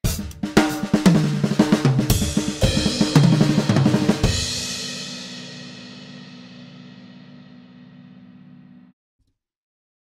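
Acoustic drum kit played with wooden drumsticks: a fast run of strokes across the drums and cymbals for about four seconds, ending on a final hit whose cymbal and drum ring out and fade away.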